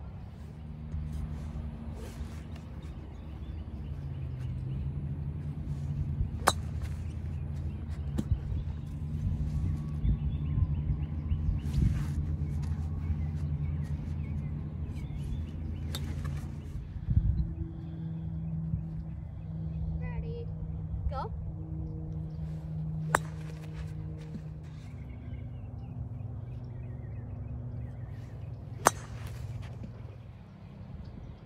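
About six sharp clicks of a golf club striking a ball, spaced a few seconds apart, over steady low held tones that change pitch twice.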